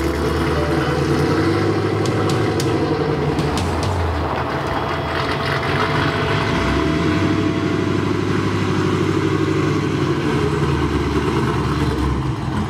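A Ford F100 pickup's Cadillac CTS-V V8 running as the truck drives. The engine note eases off near the middle and then builds again.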